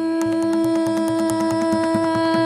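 Carnatic vocal music: the singer holds one long, steady note over quick, evenly spaced mridangam strokes.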